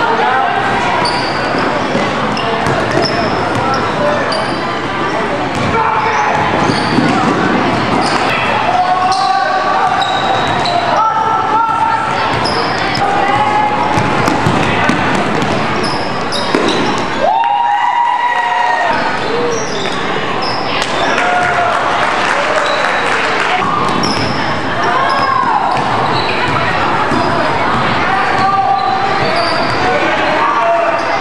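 Basketball game in an echoing gymnasium: the ball bounces on the hardwood floor, sneakers give short squeaks, and the crowd in the stands keeps up a steady chatter.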